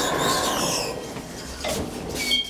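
ThyssenKrupp elevator doors sliding shut with a rumbling hiss, ending in a knock near the end as they close.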